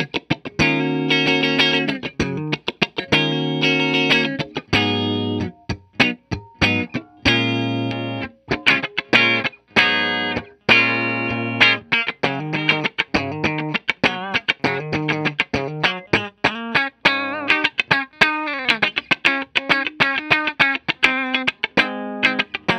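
Gibson Les Paul Standard electric guitar with humbucker pickups, played through a Bondi Effects Squish As compressor pedal into a Fender '65 Twin Reverb amp, the pedal's gain-reduction meter showing it compressing. It plays a run of picked chords and single-note lines with sharp attacks and a note bent downward about four-fifths of the way in.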